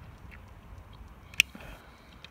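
Needle-nose pliers working a tensioned steel spring off a VW T4 door handle's lock lever: faint small metal clicks, then one sharp metallic click about one and a half seconds in.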